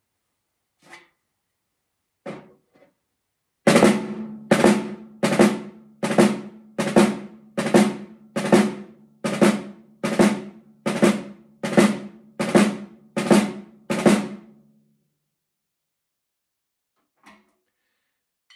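Snare drum played with wooden sticks in drags: about fourteen accented strokes, each led in by a double-bounced soft grace note, coming a little under a second apart, with the drum ringing after each stroke.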